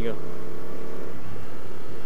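Yamaha MT-07 parallel-twin engine running at a steady pitch while the motorcycle is ridden, heard from the rider's own machine.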